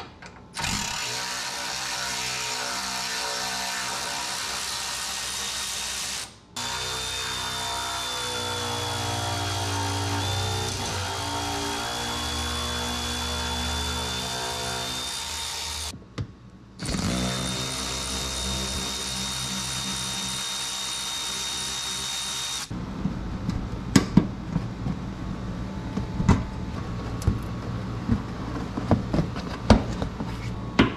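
Cordless ratchet motor running with a steady whine in three long runs that stop abruptly, its pitch sagging for a while under load as it spins out bolts. In the last several seconds come scattered sharp clicks and knocks as plastic fender-liner clips are worked loose by hand.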